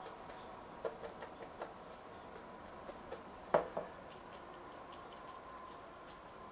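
A paintbrush tapping and clicking against a watercolour palette while paint is mixed: scattered light taps, the loudest about three and a half seconds in, over a faint steady hum.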